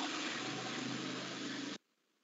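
Steady hiss-like noise with a faint low hum underneath, cutting off abruptly into dead silence near the end.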